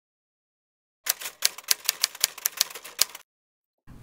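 Rapid typing on a keyboard: a quick, irregular run of sharp key clicks starting about a second in and lasting about two seconds.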